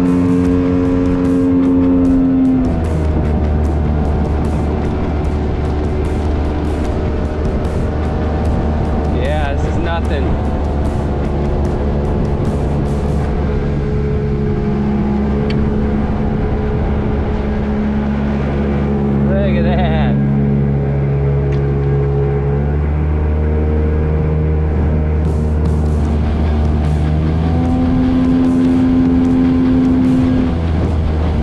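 Jet-drive outboard motor on a small aluminium jon boat running under way at speed. Its pitch drops as the throttle eases about two and a half seconds in, rises again near the end, then drops back.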